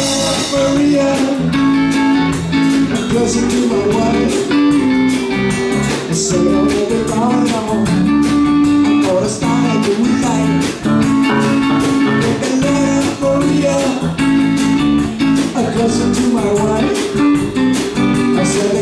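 Small live rock band playing: electric guitar and bass guitar over a drum kit, with a steady beat of drum hits.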